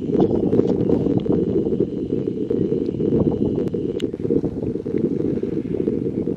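Wind blowing over the microphone: a loud, steady low noise with no pauses. A faint thin high tone sounds through the first half, with scattered faint ticks.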